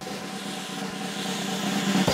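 A rushing noise swell with a low steady hum beneath it, growing slightly louder and cutting off abruptly at the end: a whoosh-type transition sound effect.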